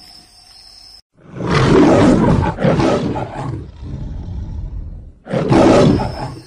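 A big cat roaring, a tiger-roar sound effect edited in: one long roar starting about a second in, then a second, shorter roar near the end.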